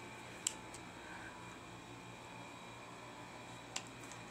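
Steady background hiss of a room air conditioner running, with two short clicks, one about half a second in and one near the end.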